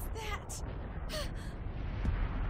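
A young woman's voice gasping in pain and exhaustion: two or three short, strained breaths with a breaking pitch, over a steady low rumble.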